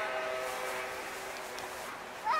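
Karakuri clock's hour music: a held chord of several steady tones, the notes dropping away one by one within about two seconds.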